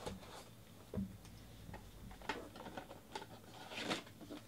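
Hands handling a trading-card box and the packs inside it: scattered light clicks and taps of cardboard, a soft knock about a second in, and a rustle of packaging near the end.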